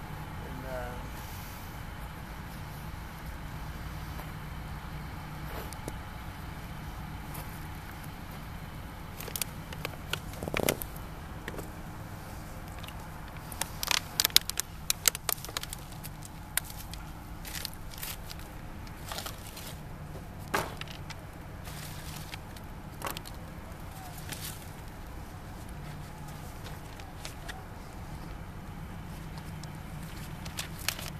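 A fire of newspaper and scrap shed wood crackling as it catches, with scattered sharp pops that come thickest about halfway through. Under it runs a steady low rumble of distant road traffic.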